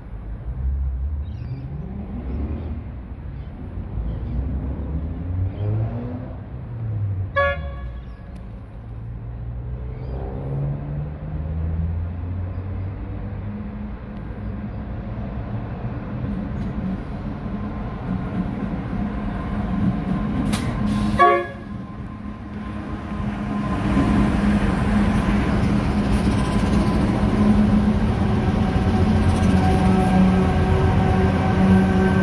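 Pacific National NR class diesel-electric locomotives hauling a freight train, approaching and then passing close by, their engines running loud from about three-quarters of the way in. Two short horn toots sound, one about a quarter of the way in and one about two-thirds in.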